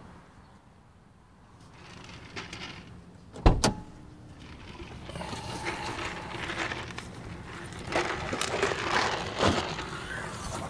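A car door of a 1994 Ford Probe GT shutting with a loud thump about three and a half seconds in, followed by irregular rustling and footsteps on grass.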